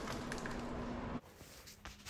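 Faint room tone with a low steady hum, cutting off suddenly to near silence just over a second in.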